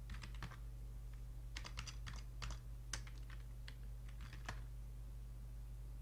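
Computer keyboard keys being typed in short runs of clicks, which stop about four and a half seconds in. A steady low electrical hum runs underneath.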